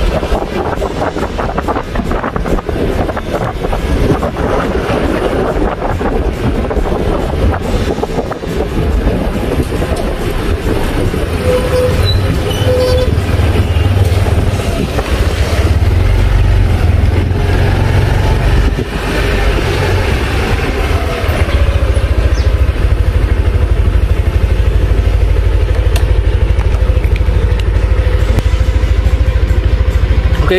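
Yamaha NMAX 2020 scooter being ridden: its engine running with wind and road noise on the microphone. The low rumble grows louder about halfway through and then holds steady.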